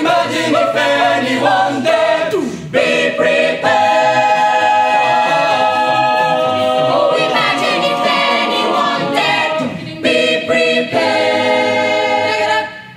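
Mixed-voice a cappella choir singing the closing bars of a song, moving into long held chords.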